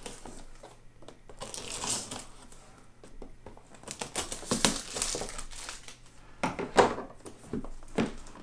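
Plastic shrink-wrap on a cardboard box being slit with a folding knife and peeled off, crinkling and tearing in irregular rustles, with a sharp crackle midway and a louder one near the end.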